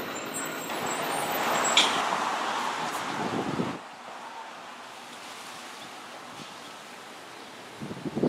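Street traffic: a vehicle passing by, its noise swelling and then cutting off suddenly a little under four seconds in. A quieter steady outdoor background follows.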